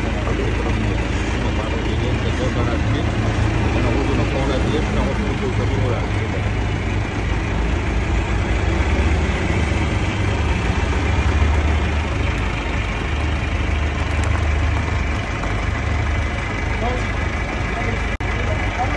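Forklift engine running steadily under load as it moves a heavy machine into a truck bed.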